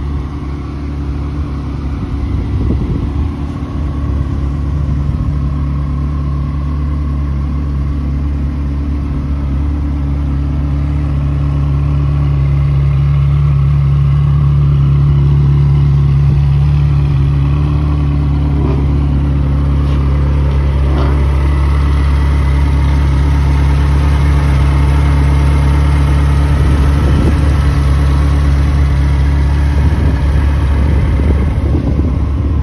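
Ferrari 360 Spider's 3.6-litre V8 idling steadily, growing somewhat louder around the middle as the rear exhausts come near.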